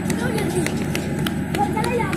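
Diesel-electric multiple unit (DEMU) train idling with a steady low rumble, while people call out and footsteps run past on concrete.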